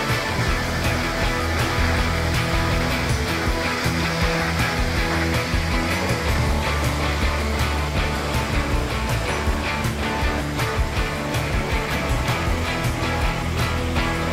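Background music with a steady beat and held bass notes.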